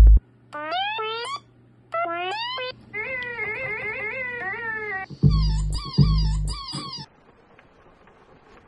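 Squeaky electronic tones from a Stylophone: short upward-sliding chirps, then a longer wavering tone. Deep bass-drum thumps join about five seconds in, over a low steady hum.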